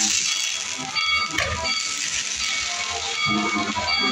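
Fireworks tower spraying a fountain of sparks, a loud rushing hiss that is strongest in the first two seconds and then fades. Music plays throughout.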